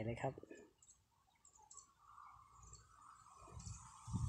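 Quiet background with a faint steady hum and a few soft, scattered clicks.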